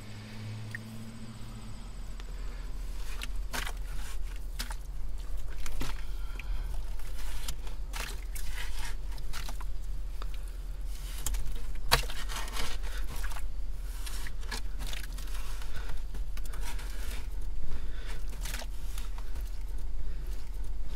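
Bare hands scraping and digging into wet, muddy privy soil, with irregular scrapes and crumbling dirt, over a low steady hum.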